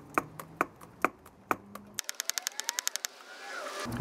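Socket ratchet clicking in steady strokes, about four clicks a second, as it loosens the bolt on a car battery's negative terminal. Halfway through comes a fast run of about a dozen clicks, then a rising rushing noise near the end.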